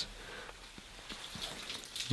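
Water being poured into ceramic rabbit water bowls, faint, with a few drips, some of it spilling onto the straw.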